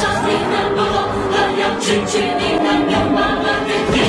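A choir singing long held notes over loud music.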